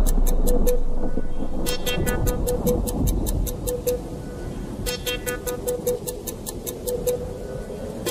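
Background music with a fast ticking beat, about eight ticks a second, that drops out briefly a couple of times.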